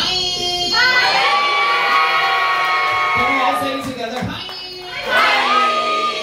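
A singing voice through the PA holding long, high notes with sliding starts over a music track, with the crowd cheering.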